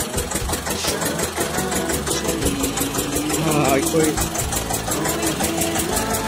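Engine of a water-well drilling rig running steadily, with an even, fast machine beat.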